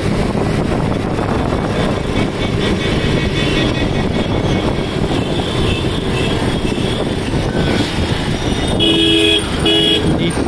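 Steady road noise of a moving vehicle, heard from on board, with a vehicle horn honking twice in quick succession near the end.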